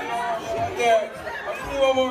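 Indistinct voices talking, with crowd chatter.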